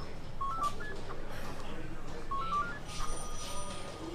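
An electronic telephone ringing in the background: short runs of three or four rising beeping notes, repeating about every two seconds, over faint room murmur.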